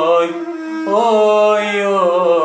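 A man singing a Pontic Greek folk song in a slow, ornamented line over a steady held drone note. One phrase ends just after the start, and after a short pause the next begins a little before halfway.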